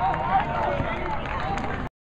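Several people's voices overlapping, indistinct talk and calls out in the open air; the sound cuts off abruptly just before the end.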